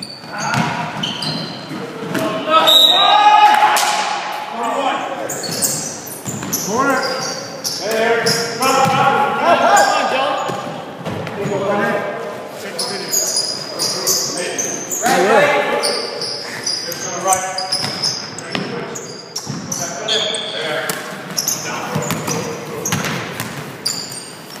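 Basketball dribbled on a hardwood gym floor, with repeated bounces, and players' voices calling out during play, all echoing in the gym.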